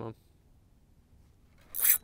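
A short, loud rasping rub just before the end, as the rod is swept up to set the hook on a biting fish.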